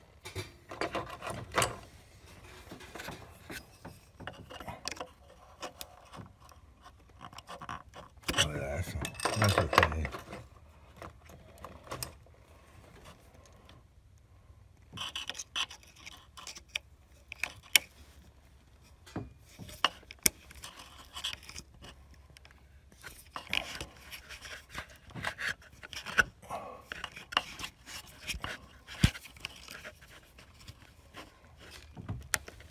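Scattered small clicks, rubbing and scraping as a thin wire and plastic parts are worked around an ignition coil and its connector, with a louder rustle lasting about two seconds some eight seconds in.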